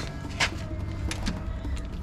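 A metal latch on an old rusty metal door being worked by hand, with one sharp metallic click about half a second in and a few fainter clicks after it.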